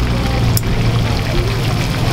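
Background music over the steady sizzle of chicken pieces deep-frying in a wide wok of hot oil, with a sharp click about half a second in.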